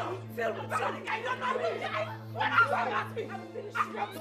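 Several people shouting over one another in a heated argument, the words unclear, over a steady low hum.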